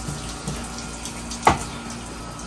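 Water running from a tap into a utility sink, a steady rush, with a single sharp knock about one and a half seconds in.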